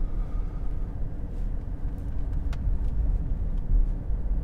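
Steady low rumble of road and engine noise heard inside a moving car's cabin, with a couple of faint clicks.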